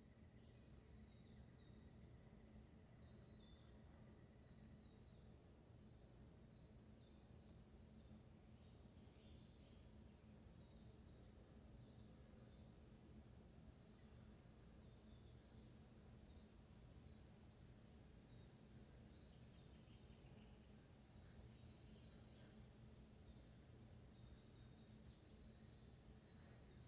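Near silence: a steady low hum with faint, high bird chirps repeating in the background.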